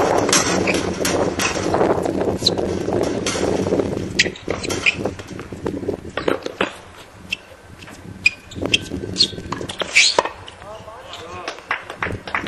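People talking on a tennis court for the first few seconds, then scattered sharp knocks from tennis balls struck by rackets and bouncing on the hard court, the loudest about ten seconds in.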